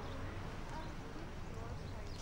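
Faint steady low background rumble from the show's outdoor scene, with a faint murmur of a voice in the middle.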